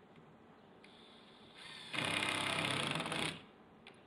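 Power drill running under load as it drives a screw into a plywood subfloor, a buzzing run of about a second and a half starting about two seconds in, after a fainter whine about a second in.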